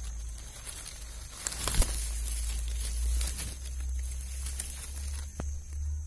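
Leaves and undergrowth rustling and crackling as bushes are pushed through, with a deep rumble of handling on the microphone and a sharp click about two seconds in. A steady high insect drone runs underneath.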